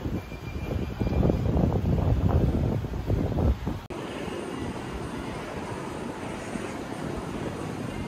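Uneven low rumble of wind and handling noise on a handheld camera's microphone while walking outdoors. About four seconds in it cuts abruptly to a steadier, quieter outdoor background hum.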